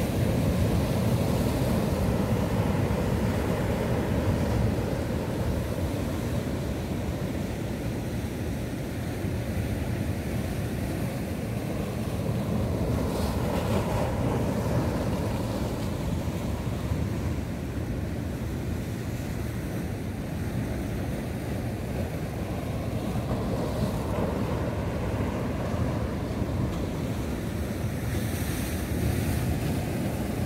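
Sea surf breaking and washing against a rocky breakwater, a continuous rushing that rises and falls slightly, with wind buffeting the microphone.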